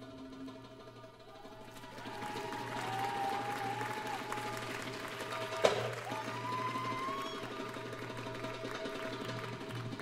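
Audience applause and cheering, with gliding whistle-like calls, swelling about two seconds in over soft live Middle Eastern ensemble music, with one sharp hit just past the middle.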